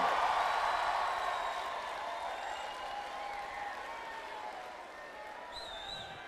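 Audience applauding, loudest at first and dying away gradually.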